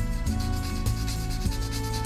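Sandpaper rubbed back and forth on a small piece of carved wood in quick, short rasping strokes while it is shaped by hand, under background music with held notes.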